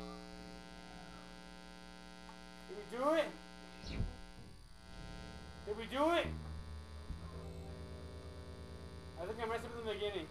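A steady low electrical hum, with three short calls that each rise and then fall in pitch, about three seconds apart, and a dull knock about four seconds in.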